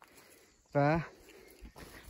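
A man's voice saying one short word; the rest is faint background noise.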